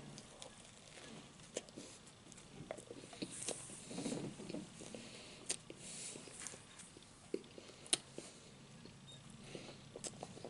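Close-up chewing of a bite of dinner roll: soft, wet mouth sounds with a few sharp clicks scattered through.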